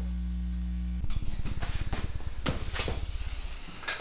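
Steady electrical mains hum from a guitar amplifier with a 1950s Gibson Les Paul Junior's single pickup plugged in, cutting off suddenly about a second in. After that comes quieter room sound with a rapid low flutter and a few light clicks.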